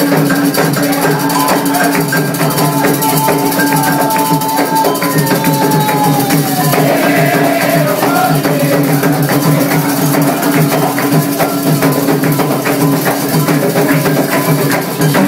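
Candomblé atabaque drums playing a fast, driving toque for the orixá Ogum, with steady hand percussion on top.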